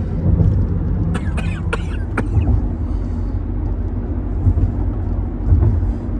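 Steady low road and engine rumble inside a moving car's cabin, with a few short coughs about one to two seconds in.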